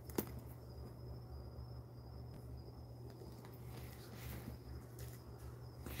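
Quiet room tone: a steady low hum with a faint, thin high whine, and one small click just after the start.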